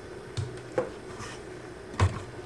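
Faint handling noise: a few small knocks and rubs as a hand moves a plastic breadboard with its wires, over a faint steady hum.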